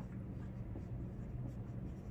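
Faint strokes of a dry-erase marker writing a word on a whiteboard, over a steady low hum.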